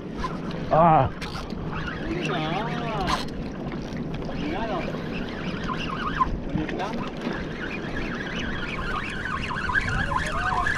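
Wind buffeting the microphone over the wash of sea water against a rocky shore, a steady noisy rush. About a second in there is a brief loud warbling sound, and a few fainter rising-and-falling calls follow later.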